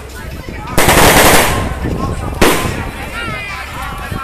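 Firecrackers going off in two loud crackling bursts over crowd chatter. The first comes about a second in and lasts under a second; the second starts sharply about two and a half seconds in and fades out.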